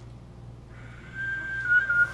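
A small whistle being blown: a breathy start, then one steady high note that wavers briefly in pitch near the end.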